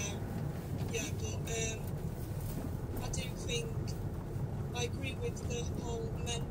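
Steady car cabin noise while driving, a low rumble of engine and tyres, with faint speech coming and going over it.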